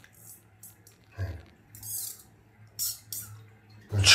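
Faint water swirling and gurgling down a bathtub drain in a few short, hissy bursts, over a low steady hum.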